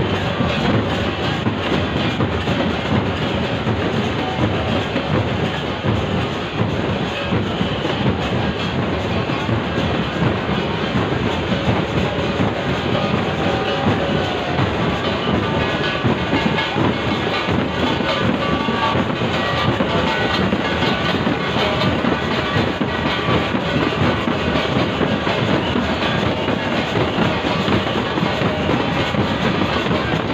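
Loud, steady din of a large dense crowd on the move: many voices mixed with a constant clatter of small knocks.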